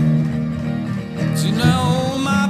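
Blues guitar picking a fill between sung lines over held low bass notes, with a few bent notes near the end.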